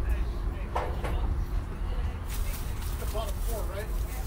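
Faint, indistinct voices of people some way off, over a steady low rumble.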